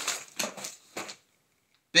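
Packaged soft-plastic fishing lures being handled: several short crinkling rustles of the plastic packaging in the first second or so.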